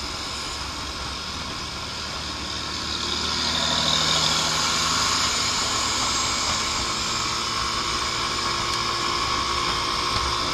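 Lance Havana Classic 125 scooter's small single-cylinder engine running on the road, mixed with wind and road noise. The sound grows louder about three seconds in and stays up.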